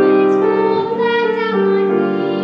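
A young girl singing a solo in long held notes, accompanied on grand piano; the sung pitch steps up about a second in and back down shortly after.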